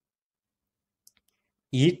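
Near silence in the pause between two dictated words, broken by a faint click about a second in, then one short spoken word, "it", near the end.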